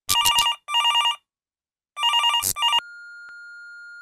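Telephone ringing in two double rings, a fast warbling trill. Near the end of the second ring a long steady electronic beep starts and holds, like an answering machine picking up before a message plays.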